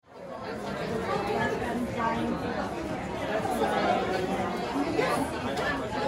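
Indistinct chatter of several people talking at once in a busy room, fading in just after the start and then running at a steady level.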